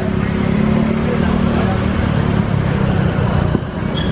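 Street traffic with a steady low engine rumble from a small passenger utility van (multicab) pulling away close by, with motorcycles passing.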